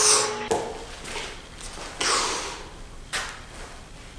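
Breaths of air pushed out through the mouth as vapor O rings are blown: a puff about half a second in, a longer breath fading away from about two seconds in, and a short puff about three seconds in.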